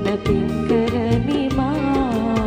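A woman singing a melodic line with a live band, tabla strokes keeping a steady beat underneath.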